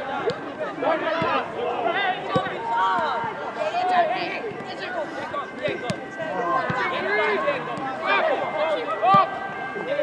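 Several voices of football players and spectators shouting and calling at once, overlapping throughout, with a few short sharp knocks among them.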